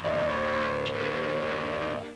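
Early cartoon soundtrack: a loud, sustained pitched drone that starts suddenly and holds steady for about two seconds, then breaks off.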